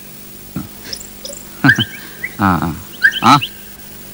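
Short, broken-up phrases of men's speech, with a few faint bird chirps about a second in.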